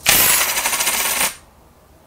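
Divination coins cast onto a table: a loud, dense metallic clatter that starts suddenly, lasts just over a second, then stops.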